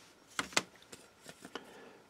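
Small laser-cut plywood parts being popped out of their sheet by hand: a couple of light clicks about half a second in, then a few fainter ticks.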